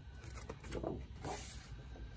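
Paper being handled and slid over the table: several short rustling swishes, the strongest a little under a second in and again at about one and a quarter seconds.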